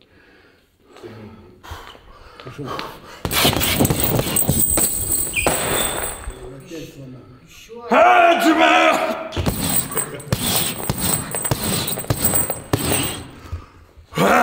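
A heavy punching bag being punched and breaking off its hanging mount, coming down on the floor with its chain clattering and ringing. Loud shouting breaks in partway through.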